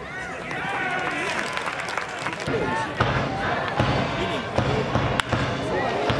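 Voices calling out across a ballpark, with a series of sharp knocks from about halfway through, repeating under a second apart.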